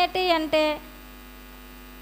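Steady electrical mains hum, heard on its own once a woman's voice stops less than a second in.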